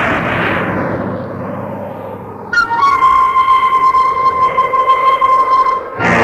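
Radio-drama sound effects: a loud noisy crash-like swell that fades away over about two seconds, then, about two and a half seconds in, a sudden sustained high electronic tone with a fast fluttering pulse.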